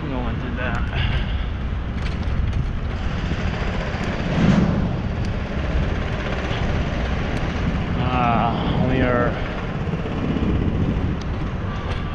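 Wind and road rumble on a bicycle-mounted action camera while riding across pavement, with a louder thump about four and a half seconds in.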